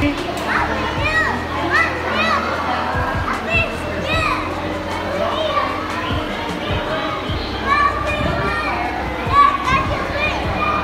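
Many children's voices chattering and calling out over one another, with a steady low hum underneath.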